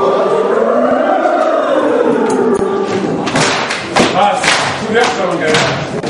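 A group of voices singing together in a large hall, with gliding, swelling pitch. About halfway through, sharp percussive beats join in, a few a second and unevenly spaced.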